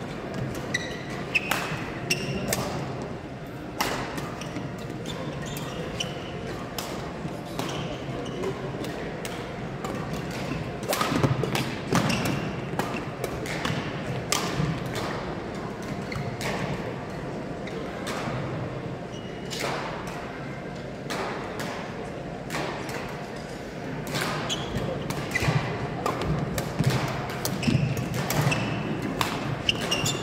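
Badminton hall ambience: irregular sharp racket-on-shuttlecock hits and brief shoe squeaks from several courts over a background murmur of voices, in a large gym.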